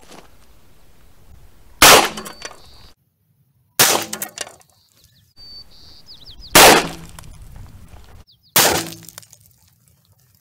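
.357 Magnum rounds fired from a Ruger GP100 revolver: four sharp reports roughly two seconds apart, each with a short ringing tail.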